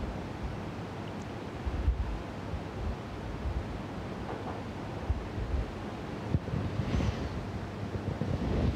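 Steady low rumble and hiss of room background noise, with a few soft low bumps, the loudest about two seconds in.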